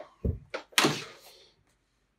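Two thuds: a low one about a quarter second in, then a louder, sharper knock just under a second in that dies away over about half a second.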